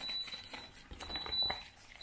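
A timer's alarm sounds a thin, steady high-pitched tone, marking the end of one minute of stirring. Under it a wooden stick scrapes and clicks against a plastic tub as it stirs wet casting plaster.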